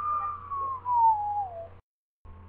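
A single whistled note falling slowly in pitch for about a second and a half, then cutting off abruptly.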